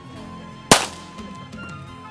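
A single pistol shot about two-thirds of a second in, sharp and with a brief ringing tail, over background music.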